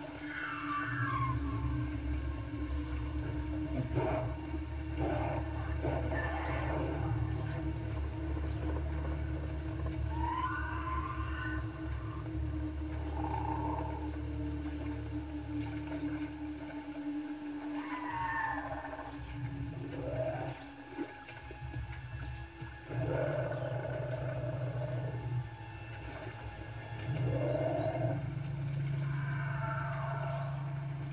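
Movie soundtrack: a low sustained drone with short, falling, cry-like glides recurring every few seconds, heard through a TV speaker.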